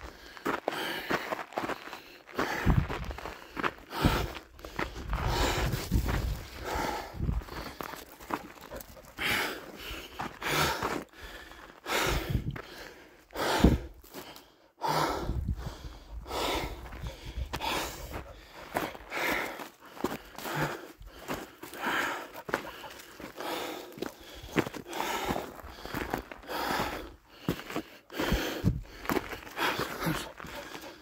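A person's footsteps crunching steadily on a coarse sandy, gravelly dirt trail, about two steps a second.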